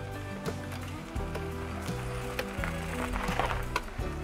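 Background music: a bass line stepping between held low notes, with light percussive ticks keeping time.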